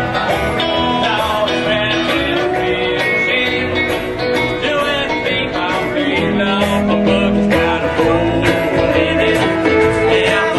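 Live country-bluegrass band playing an instrumental passage led by guitar and other plucked strings.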